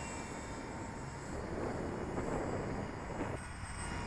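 Electric motor and propeller of a Dynam F4U Corsair RC model warbird in flight, a faint steady drone.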